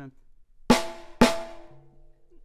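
Two strikes on a small drum with the unsplit side of a bamboo drumstick, about half a second apart, each ringing out briefly. It sounds more like a normal snare drum.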